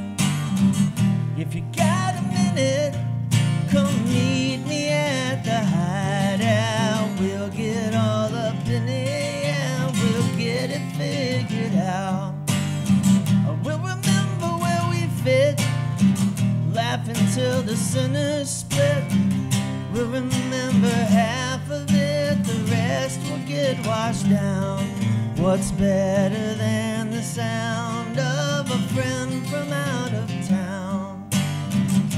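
A man singing a song while strumming an acoustic guitar.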